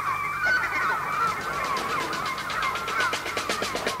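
Seagull cries used as a sound effect in a recording of a 1960s beat-group song, a run of short wavering calls over quiet instrumental backing. A faint, even tapping beat comes in toward the end.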